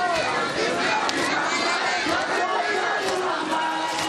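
A crowd of men chanting together in an Ashura mourning procession, many voices overlapping at a steady, loud level.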